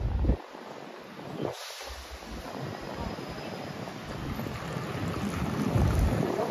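City street traffic: cars driving past with a steady noise of engines and tyres on the road. Wind buffets the microphone with a low rumble in the first moment and again near the end.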